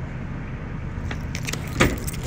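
Metal clank of a semi-trailer's rear door latch handle being yanked, with a few faint clinks before the one loud clank near the end, over a steady low rumble.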